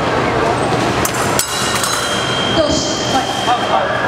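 Épée blades clicking together about a second in, then an electronic scoring machine giving a steady high beep for over a second, the signal that a touch has landed, over a murmur of crowd voices.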